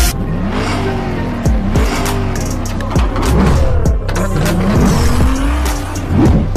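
A car engine revving, its pitch rising and falling several times, laid over intro music with a steady bass beat.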